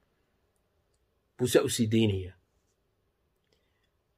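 A man's voice speaking one short phrase, about a second long, starting about a second and a half in; the rest is silence.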